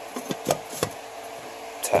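A few light, sharp knocks and clicks from a metal can lid being handled and set onto a metal paint can, about half a second and just under a second in.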